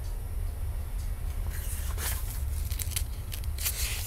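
A steady low rumble from a passing train, with a few faint clicks and rustles from the picture book being handled.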